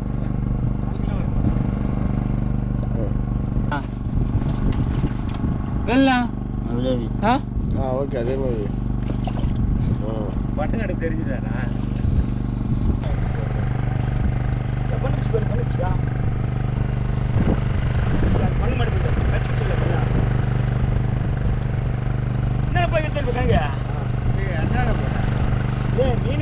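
A small engine on the fishing boat running at a steady idle, a constant low hum throughout. Men's voices call out briefly now and then over it.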